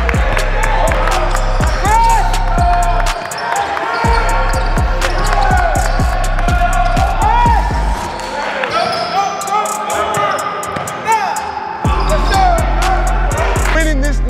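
Basketballs bouncing on a hardwood gym floor, many sharp knocks with short squeaks from players' sneakers, over hip-hop music with a heavy bass line that drops out briefly a few seconds in and again for several seconds in the second half.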